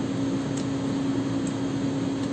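Steady machine hum at one constant low pitch with a hiss over it, and two faint ticks about a second apart.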